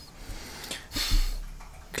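A short, noisy breath drawn in close to the microphone about a second in, over low room sound.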